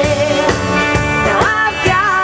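A live band playing: drum kit beating steadily under electric and acoustic guitars, with a woman's voice singing a melody over them.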